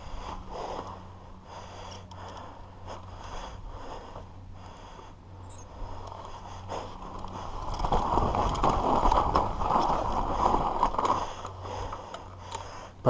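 Trek Session 9.9 downhill mountain bike rolling down a loose dirt track: tyres scraping over the dirt with rattles and knocks from the bike. It gets louder for a few seconds about two-thirds of the way in.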